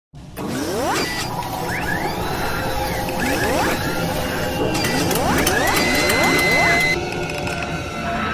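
Animated intro sound effects: mechanical clicking and ratcheting with several rising swooshes, layered over music. The effects die down about seven seconds in.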